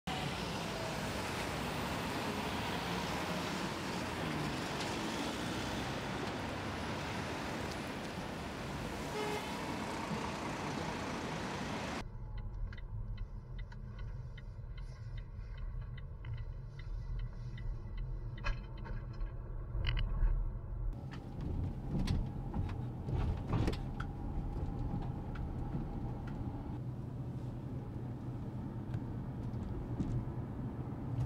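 Busy city street noise with passing traffic for about the first twelve seconds, then a sudden change to the low rumble of road noise inside a moving LEVC TX battery-electric taxi, with scattered clicks and knocks.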